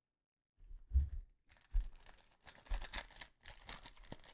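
A foil trading-card pack crinkling as gloved hands pick it up and tear it open, with a few soft handling thumps. The sound starts about half a second in.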